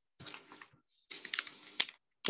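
A stylus tapping and scratching on a tablet screen while writing: two short stretches of light scratching with a few sharp clicks, the sharpest near the end.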